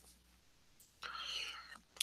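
Near silence, then about a second in a man's faint, breathy, whispered voice sound lasting most of a second.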